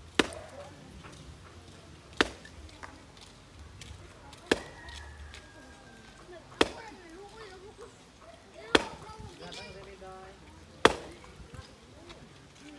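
A long-handled digging hoe swung into hard, stony ground: six sharp strikes, evenly spaced about two seconds apart.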